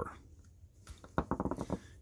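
A quick run of small sharp clicks, starting about a second in, from a screwdriver and fingertips working the spring and gate of a small carabiner as the spring is pushed up onto its ledge inside the gate.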